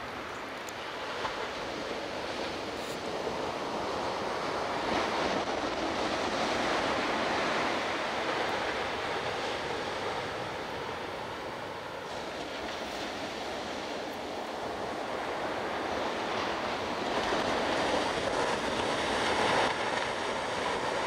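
Ocean surf breaking on a sandy beach: a steady wash of noise that swells twice as waves break and eases between them.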